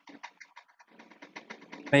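Computer keyboard being typed on: quick, irregular clicking, heard through a video call's audio. A spoken word cuts in near the end.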